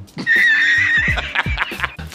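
A comedy sound effect dropped into the edit: a horse's whinny, one quavering high call under a second long, over a beat of low thumps about twice a second.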